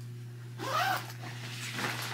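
A gym bag being picked up and handled, with zipper-like rustling in the second half. About half a second in there is one short pitched sound that rises and then falls.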